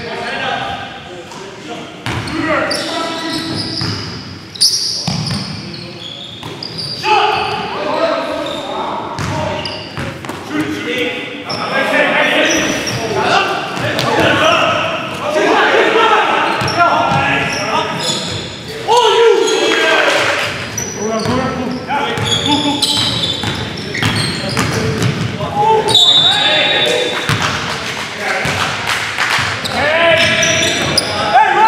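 Live basketball game sound in a large gymnasium: a basketball bouncing on the wooden court, with players' voices and calls throughout.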